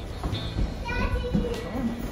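A young child's high-pitched voice calling out about a second in, with other voices around it.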